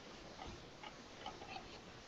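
Faint, irregular clicks over quiet background hiss.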